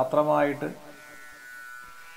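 A man's voice speaking through a microphone, stopping under a second in, followed by a steady faint buzz with several high steady tones underneath.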